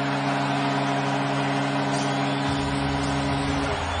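Arena goal horn blaring a steady low chord for a home goal, over a cheering crowd. The horn cuts off near the end.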